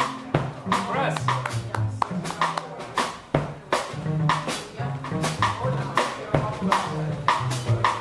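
A live jazz trio of electric guitar, upright double bass and drum kit playing a bossa nova tune. Bass notes step along underneath while guitar notes sit above, and frequent sharp drum and cymbal strokes run throughout.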